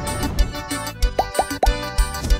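Instrumental sofrência/forró music played on a Korg Pa900 arranger keyboard: a programmed drum beat with steady deep kicks under sustained keyboard chords, with three quick downward-sliding notes a little past a second in.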